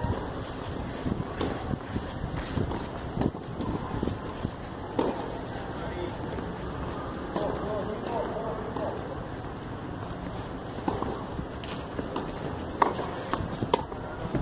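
Outdoor tennis-court ambience between points: distant talk from players and onlookers over a steady wind-like noise, with a few short sharp knocks of a tennis ball scattered through.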